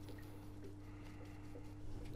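Quiet room tone with a steady low hum, and faint light ticks from a small brush dabbing crushed charcoal onto a model buffer stop.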